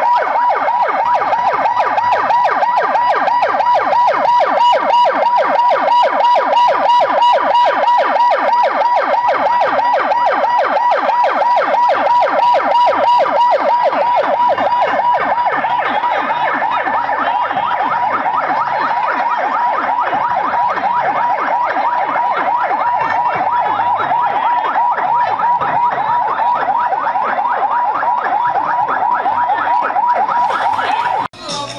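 Electronic siren on a hearse's roof light bar sounding a fast, continuous warble, loud and unbroken.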